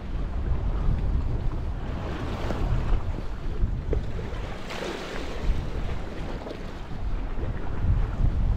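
Gusty wind buffeting the microphone in an uneven low rumble, with sea waves washing against the rocky shore; the wash swells twice, around the middle.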